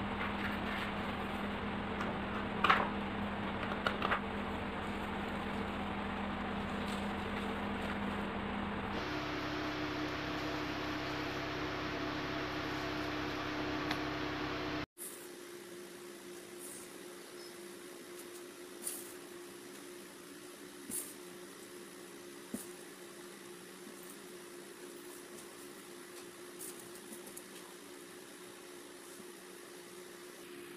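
Steady machine hum of a room's background. Its pitch and level jump abruptly twice, and it is quieter in the second half. A few faint short taps and rustles come from paper strips being handled.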